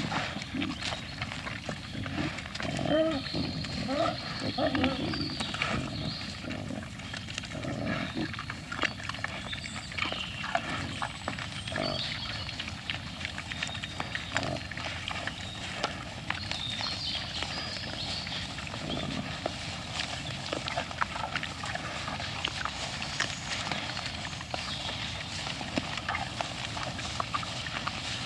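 Herd of wild boar feeding and scuffling over food: grunting, busiest in the first few seconds, over many short clicks and crunches of feeding.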